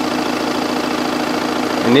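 An engine idling steadily: a constant hum with a fine, even low rhythm under it.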